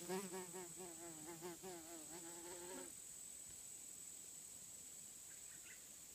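Wingbeat buzz of a hover fly, a wasp-mimicking flower fly, flying close around. The pitch wavers up and down as it darts about, fading, then cuts off suddenly about three seconds in.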